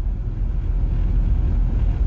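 Steady low rumble of a car in motion, road and engine noise heard from inside the cabin.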